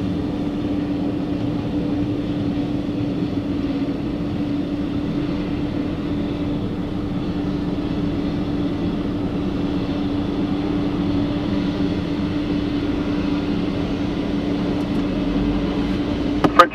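Steady engine drone with one constant low tone, heard from inside a vehicle's cab on an airport ramp.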